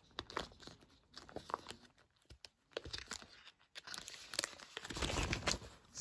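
Crinkling and crackling of plastic packaging as thin plastic stencil sheets are handled and pulled out of their pack, irregular and busiest in the last two seconds.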